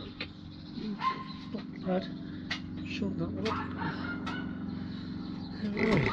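Steel trowel tapping and scraping on brick and mortar as a course is checked with a spirit level, over a steady low machine hum, with a few short bird calls.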